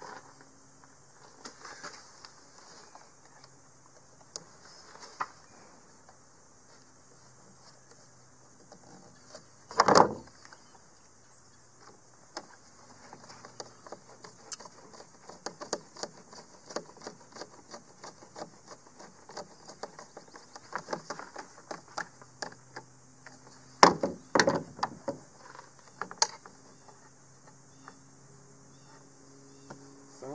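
Screwdriver driving screws into the metal hinge of a plastic RV roof vent lid, with handling knocks of the lid: a run of small, quick clicks. The loudest knock comes about ten seconds in, with another loud cluster near twenty-four seconds.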